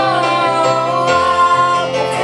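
Live female singing into a microphone, accompanied by a Yamaha Motif ES6 keyboard. The voice moves through a short phrase and then holds one long note near the middle.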